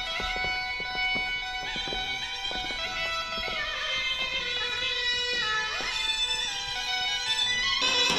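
Turkish zeybek folk-dance music: a slow melody of held notes over plucked notes, changing to a louder passage near the end.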